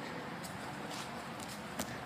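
Quiet outdoor background: a faint steady hiss, with one small click shortly before the end.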